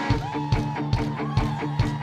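Live rock band playing a passage without vocals: a guitar melody with bent notes over a steady drum beat, about two beats a second.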